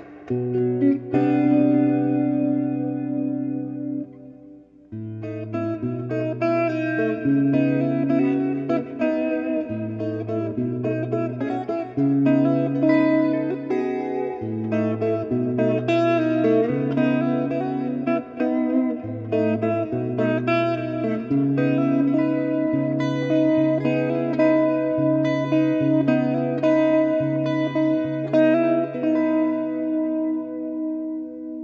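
Solo electric guitar played through a 1977 Roland Jazz Chorus amplifier: an instrumental tune of chords over a bass line that moves about once a second, with a brief quieter dip about four seconds in, ending on a held chord.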